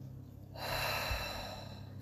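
A woman breathing out audibly through her mouth: one long, breathy exhale that starts suddenly about half a second in and slowly fades.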